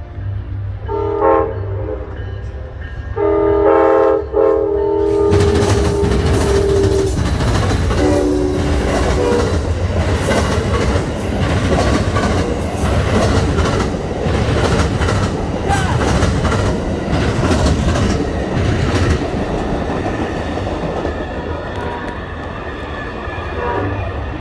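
Amtrak passenger train led by a P42DC diesel locomotive. Its horn sounds three times in the first ten seconds, the middle blast the longest and loudest. From about five seconds in, the locomotive and its passenger cars pass close by with a continuous rumble, the wheels banging repeatedly as they cross a rail diamond.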